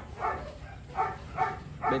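A dog barking in short, evenly spaced barks, about five in two seconds.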